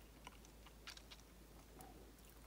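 Near silence with a few faint small clicks from a fine paintbrush dabbing paint onto a plastic action figure's hand.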